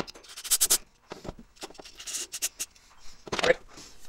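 A click, then a few short bursts of hiss as the passages of a Stihl FS45C trimmer's carburetor are blown through to clear out jammed debris and old-fuel crud.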